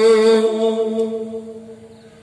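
A man's chanting voice through a microphone and loudspeakers, holding one long sung note at the end of a line and fading away about halfway through.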